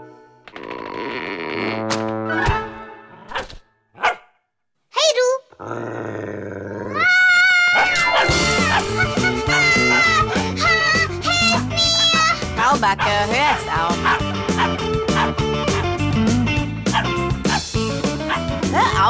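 Cartoon soundtrack: a few short sound effects and a cartoon dog's vocal sounds. About seven seconds in, loud background music comes in and plays to the end.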